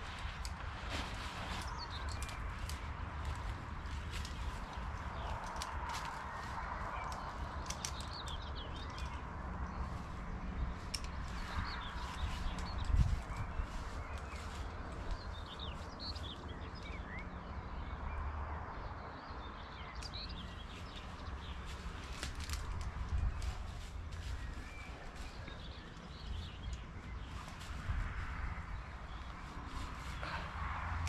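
Birds chirping and singing over a low rumble of wind on the microphone, with scattered rustles and clicks of a hammock and its straps being unpacked and clipped up. One sharper knock about 13 seconds in.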